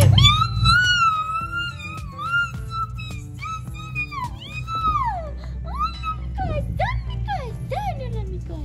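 Small white Pomeranian-type dog whining and howling in long, wavering, high-pitched cries, then shorter rising-and-falling whines toward the end: an excited greeting as its owners come home.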